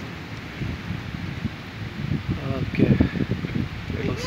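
Rainstorm wind and rain, with gusts buffeting the microphone in irregular rumbling bursts that grow stronger in the second half.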